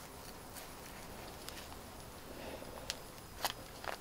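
Faint handling sounds of hair being rolled onto a plastic perm rod by hand, with a few soft clicks in the last second or so as the rod is handled and set in place.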